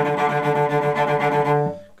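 Cello played with a fast sautillé bow stroke: rapid, even, springing short notes repeated on one pitch. The notes stop shortly before the end.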